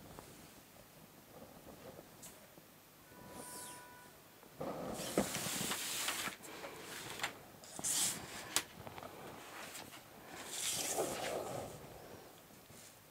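Pattern paper sliding and rustling on a table in several bursts, with sharp clicks and knocks as rulers are lifted, moved and set down.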